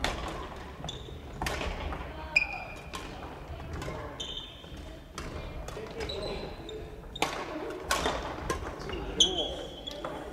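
Badminton rackets striking shuttlecocks on several courts, a string of sharp hits ringing out in a large gym hall, with sneakers squeaking on the wooden floor several times and players' voices in the background.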